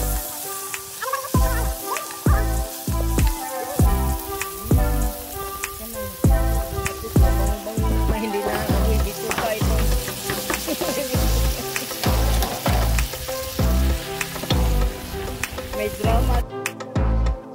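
Mushrooms and peppers sizzling in a hot pot as they are stirred with a wooden spoon, a steady hiss of frying. Background music with a regular beat plays over it.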